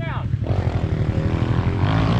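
Small single-cylinder pit bike engine running close by, its tone falling in pitch near the end.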